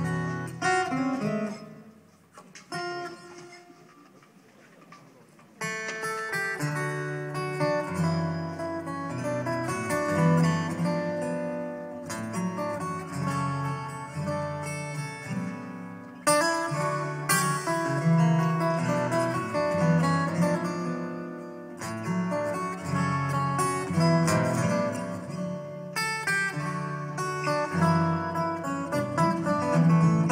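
Two acoustic guitars played fingerstyle in a live duet. A few soft opening notes give way to a quiet, sparse stretch. Fuller playing with a steady bass line starts about five seconds in and grows louder around the middle.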